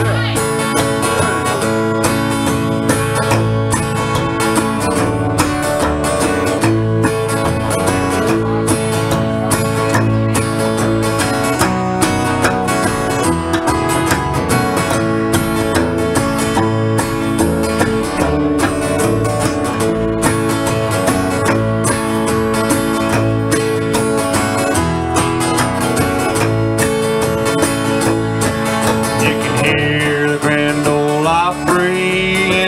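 Live instrumental break of a country shuffle on acoustic guitar and upright bass, the bass slapped in a steady, clicking beat.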